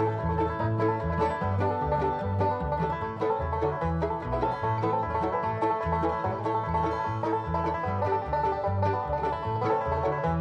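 Bluegrass band playing an instrumental break with the banjo taking the lead in rapid picked notes, backed by acoustic guitar, mandolin and upright bass keeping a steady alternating bass beat.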